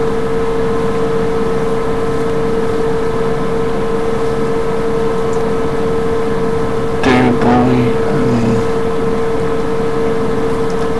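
Steady hiss with a constant mid-pitched hum running underneath, the noise floor of the recording. A short burst of voice comes about seven seconds in.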